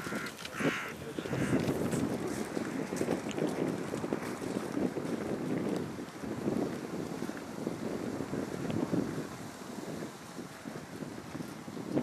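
Gusty wind rumbling on the microphone outdoors. Two short, harsh crow-like calls come in the first second and a half.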